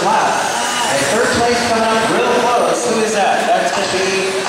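A man's voice talking in a large echoing hall, over the steady running noise of electric RC short course trucks on a dirt track.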